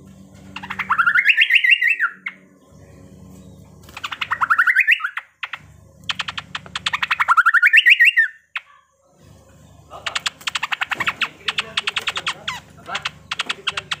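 A caged cucak pantai, a Papuan honeyeater, singing in loud machine-gun-like bursts: three runs of very fast repeated notes, each rising and then falling in pitch. Near the end come several seconds of fast, irregular clicking chatter.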